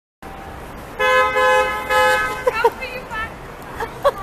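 Car horn honking twice about a second in, a longer blast and then a shorter one, followed by a few short, excited calls from voices.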